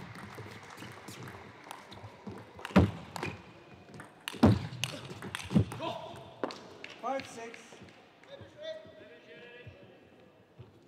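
Table tennis ball knocks: a few sharp knocks a second or more apart with smaller ticks between them, followed by voices in the last few seconds.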